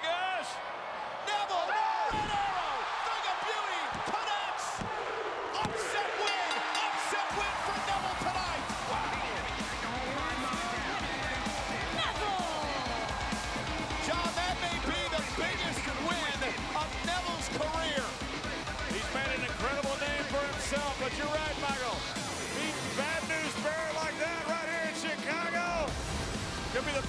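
Arena crowd cheering, with a few sharp thuds from the wrestling ring in the first several seconds. From about seven seconds in, a wrestler's theme music with a heavy beat plays over the cheering.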